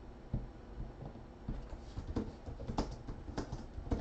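Trading cards and plastic card holders being handled on a table: irregular soft taps and knocks, with a few sharper plastic clicks in the second half.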